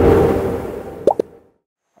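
A transition sound effect: a rush of noise that swells and dies away, with a short rising pop about a second in.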